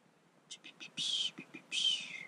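A whispered voice: a few short breathy sounds, then two longer hissy ones, the last the loudest.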